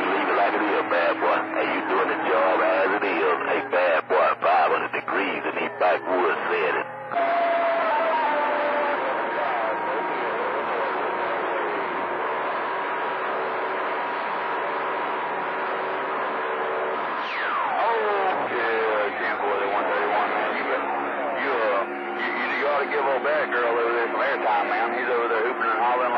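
CB radio receiving long-distance skip on channel 28 (27.285 MHz): garbled, overlapping voices through static, with steady whistling tones under them. The signal chops in and out over the first seven seconds, and a falling whistle sweeps down a little past halfway.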